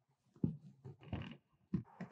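Footsteps on a hard floor as a person walks away from a lectern: a few irregular soft thuds and scuffs.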